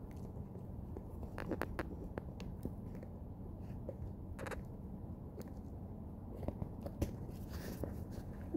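Light handling noise: a few scattered clicks and taps over faint room tone.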